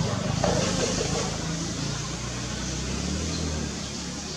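A motor vehicle's engine running, a low hum whose pitch shifts a little, easing slightly toward the end.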